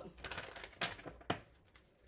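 A deck of tarot cards handled and shuffled in the hands: a few crisp card clicks and snaps, the sharpest a little past halfway, then quieter near the end.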